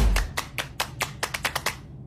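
A low thump, then a quick run of sharp clicks or taps, about seven a second.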